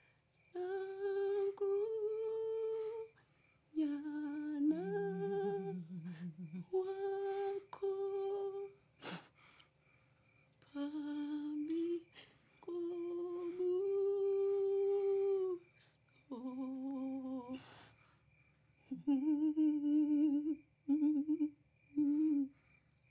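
A woman humming a slow, lullaby-like tune in short phrases of a few held notes, with pauses between phrases. A single sharp click about nine seconds in.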